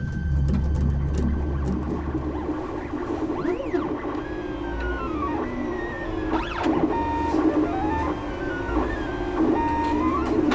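Stepper motors of a 3D food printer whining as the print head moves, the pitch sweeping up and down and stepping between held notes several times, over background music. A low rumble fills the first couple of seconds.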